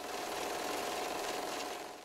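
A steady, fast mechanical clatter with a faint hum through it, fading near the end. It is a sound effect laid under a section title card.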